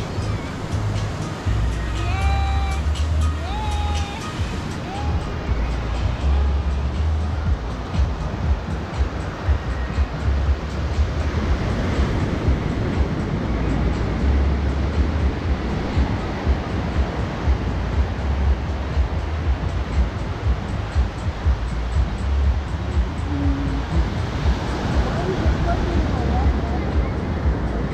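Waves washing up a sandy beach, with wind buffeting the microphone. Faint distant voices come through about two to four seconds in.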